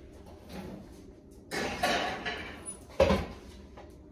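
Kitchen oven being loaded: a scraping slide of about a second as the glass baking dish goes onto the rack, then a sharp, loud thump of the oven door shutting about three seconds in.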